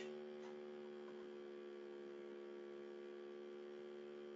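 Faint steady electrical hum: several unchanging tones held without a break, with no other sound.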